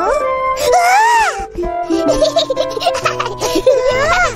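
A young cartoon child's voice over light background music: one long wordless vocal glide that rises and falls about a second in, like a waking stretch-yawn, then a string of short giggles and playful vocal sounds.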